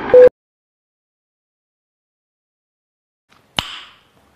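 The final beep of a film-leader countdown sound effect, a short mid-pitched tone over a rattling film-projector noise, both cutting off abruptly a moment in. Dead silence follows for about three seconds, broken near the end by a single sharp click with a brief hissy tail.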